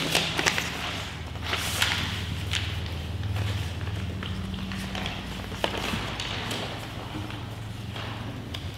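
Paper rustling and crackling as a sealed bid envelope is opened and its pages unfolded, in a series of short crisp rustles. A steady low hum runs underneath.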